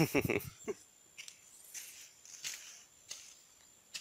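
A person's laughter trailing off in the first half-second, then quiet outdoor ambience with a few faint, brief rustling sounds.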